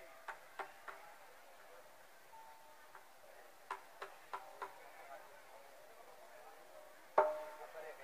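Sparse pitched percussion strikes from a gamelan ensemble, in short runs of three or four at about three a second, with a much louder strike about seven seconds in as the music starts up.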